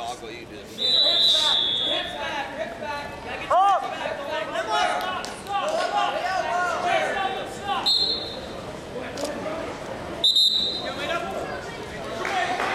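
Voices of coaches and spectators calling out in a gym hall during a wrestling bout, with a loud shout at about four seconds. Three short high-pitched squeaks cut through: about a second in, near eight seconds and near ten seconds.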